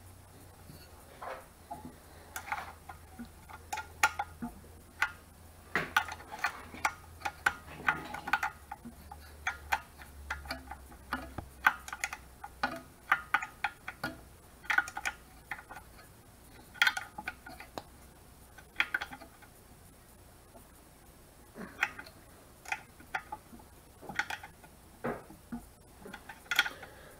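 Irregular metallic clicks and clinks from hand tools and hardware as the nuts holding the fuel pump onto a 1500cc air-cooled VW engine are tightened down.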